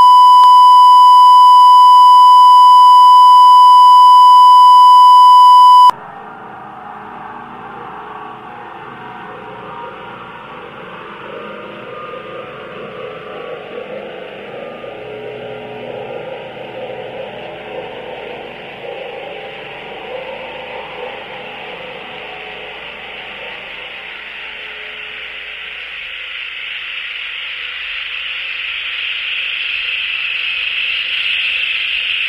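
A loud, steady electronic beep tone held for about six seconds, cut off abruptly, followed by a quieter hissing noise that grows louder near the end.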